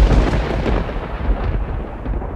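A loud, deep rumble like rolling thunder, which begins suddenly just before and keeps swelling and easing. Its hiss dies away over about a second and a half while the bass rumble goes on.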